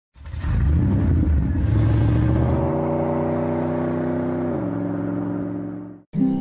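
Intro sound effect of a car engine: a rumble that swells in and revs, then settles into a held tone that glides down in pitch about four and a half seconds in and fades out.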